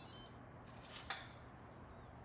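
Instant Pot lid being lifted off and handled: two light clicks about a second apart, with a brief high thin tone at the first.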